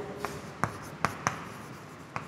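Chalk writing on a blackboard: faint scratching with about four short, sharp taps as letters are written.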